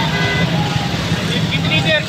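Motorcycle rickshaw engine running steadily close by in street traffic, under the voices of a crowd.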